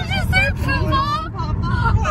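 A woman laughing in short high-pitched bursts that stretch into longer squeals, over the steady road rumble inside a moving car.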